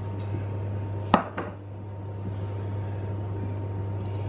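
Kitchenware knocking: one sharp knock about a second in and a lighter one just after, over a steady low hum.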